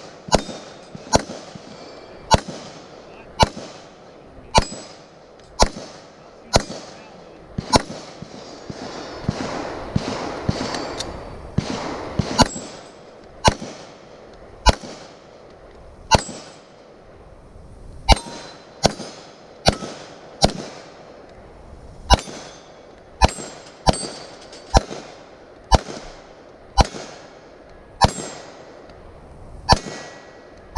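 Handgun firing a long, steady string of shots at steel plate targets, roughly one shot a second, coming a little quicker in the second half.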